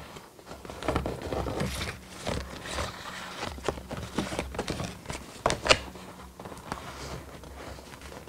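Cardboard packaging being handled: rustling and scraping with scattered clicks and taps, the loudest a pair of sharp clicks about five and a half seconds in.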